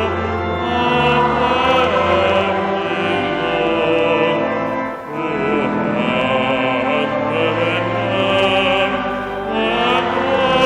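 Church congregation singing a Christmas carol together over accompaniment holding steady notes, with a short breath between lines about halfway through.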